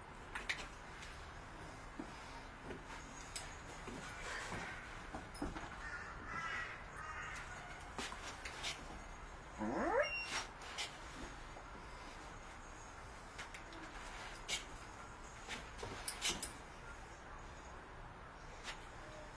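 A puppy whining in short calls, then giving a rising yelp about ten seconds in as he is blocked at the doorway, over scattered light knocks and scuffs.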